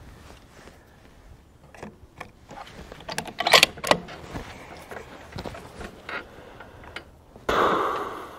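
Scattered metallic clicks and clacks of a bolt-action rifle being handled between shots, the loudest a quick pair about three and a half seconds in, followed near the end by a brief rustling burst.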